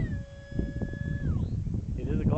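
Brushless electric ducted fan on a foam RC plane whining in flight. Its pitch drops as the motor slows, once at the start and again about a second and a half in, over a low wind rumble.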